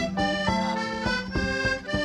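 Button accordion playing a quick, lively folk instrumental tune, note after note in fast runs. An acoustic guitar strums a steady rhythm underneath.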